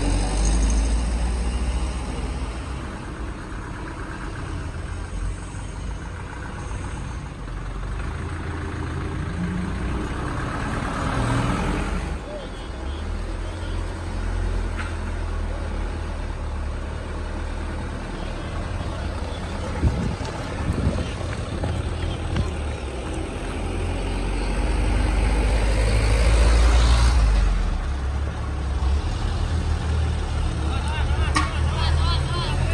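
Heavy diesel truck engines running with a deep, continuous rumble as loaded trailer trucks work on a steep climb. The sound swells louder a few seconds before the end.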